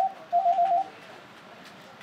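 Electronic telephone ringer trilling: a short warbling ring that stops about a second in, following the tail of an earlier ring.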